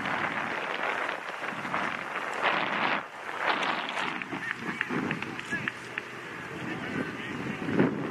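Distant, indistinct shouts and calls from players and people around an outdoor soccer field, over a steady hiss of wind on the microphone.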